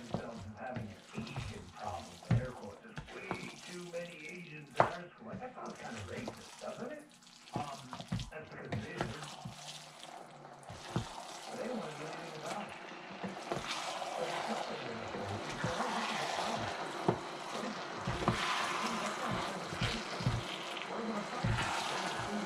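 Cooked black glutinous rice being stirred and folded through thick coconut-sugar syrup in a wok with a silicone spatula and a wooden spoon. The sound is wet and sticky, with many short knocks and scrapes of the utensils against the pan. A denser wet hiss builds over the second half.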